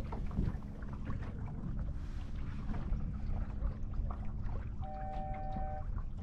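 Water rushing along the hull of a small sailing dinghy under way, with wind on the microphone and a steady low hum. A brief steady high tone sounds about five seconds in, lasting about a second.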